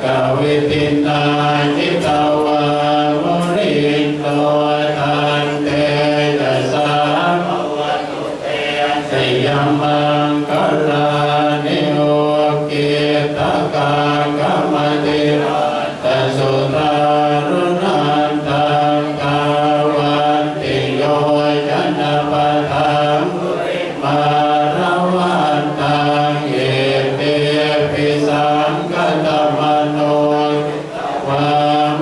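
A group of Buddhist monks chanting in unison, the voices held on a steady low pitch without pause.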